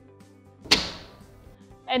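Aluminium snap rail of a retractor banner stand being opened: one sharp snap about two-thirds of a second in, with a short ringing fade.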